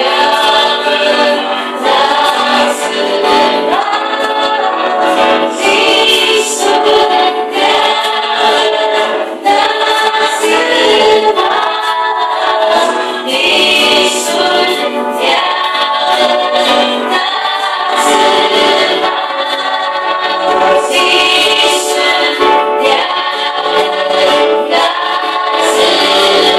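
A Paiwan group singing a worship song together in chorus, loud and continuous, the melody moving from phrase to phrase.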